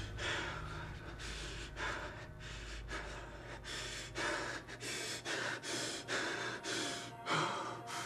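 A man breathing hard through an open mouth. The breaths are spaced out at first, then quicken to about two a second in the second half, over a low rumble that fades out about halfway through.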